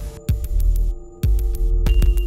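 Minimal electronic music: sharp digital clicks a few times a second over a deep bass pulse and several steady held tones, the sound dropping away briefly twice.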